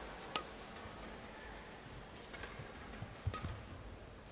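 Badminton racket strings striking a shuttlecock during a rally: three sharp hits, one just after the start and two about a second apart near the end, over faint arena background.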